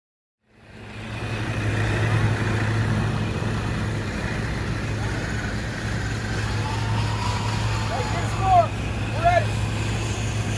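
Concrete pump truck's engine running with a steady low hum, fading in about half a second in, while concrete is being pumped through the overhead boom and spread. Two short high calls stand out near the end.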